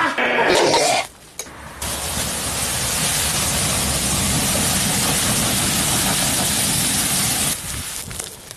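A large fire burning in an electric skillet, a dense, steady rushing noise that starts suddenly about two seconds in and holds until near the end.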